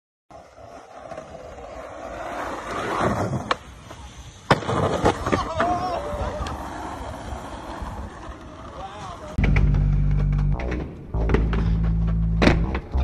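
Skateboard wheels rolling on concrete and growing louder, then sharp clacks of the board as tricks are popped and landed. Shouts from onlookers follow, and music with a heavy bass line comes in near the end.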